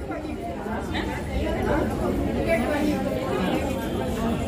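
Several people talking at once, their voices overlapping in a general chatter.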